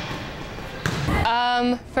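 Volleyball practice in a gym: a ball struck with a sharp smack and a low thud about a second in, over the noisy echoing room. A girl's voice starts speaking near the end.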